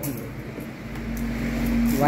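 A vehicle engine's low rumble, growing from about halfway through, with a steady hum over the second half.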